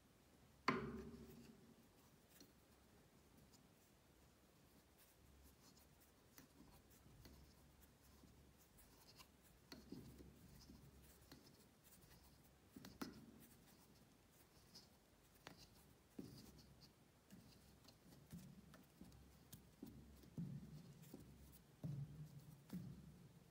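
Faint, intermittent scraping and clicking of a hand tap cutting M3 threads into a PVC sleeve, with one sharp knock about a second in.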